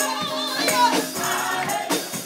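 Live gospel worship music: a woman sings into a microphone, her voice wavering on held notes, over other singing voices.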